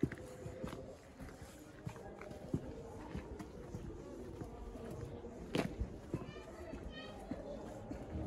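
Quiet alley ambience: faint, indistinct distant voices with scattered footsteps. There is one sharp knock a little past halfway and a brief high-pitched call near the end.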